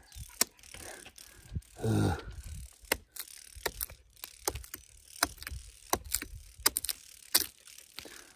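Small hatchet chopping into the thick bark of a dead standing ponderosa pine: a long, irregular run of sharp chops, one to three a second.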